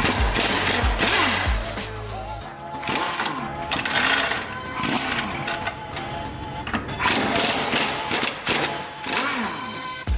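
Impact wrench hammering in several short bursts on the lower ball-joint bolts of a front suspension arm, over background music.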